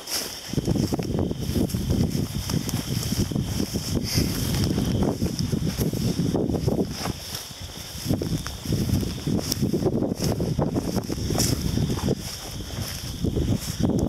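A person walking through tall dry grass and brush, the stalks rustling and swishing at each step, with wind buffeting the microphone.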